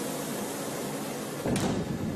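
Steady hiss of background room noise, broken about one and a half seconds in by a short, sudden noise.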